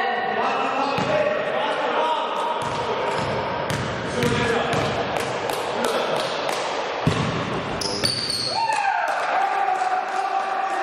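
A basketball bouncing a few times on a gym's wooden floor during a free throw, the thuds a few seconds apart and echoing in the hall, over players' voices.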